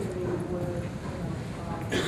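A man's voice asking a question, indistinct and too faint to make out words, over a steady low room rumble. A sharp click comes near the end.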